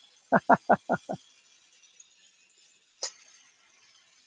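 A man gives a short laugh, five quick 'ha' pulses, over the faint steady hiss of a glassworking torch flame. A single sharp click comes about three seconds in.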